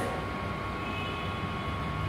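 Steady background noise of a room with no one speaking: an even low rumble and hiss with a thin steady whine running through it.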